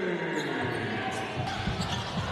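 Basketball dribbled on a hardwood court, a few bounces near the end, over arena crowd noise, with a long falling tone through the first part.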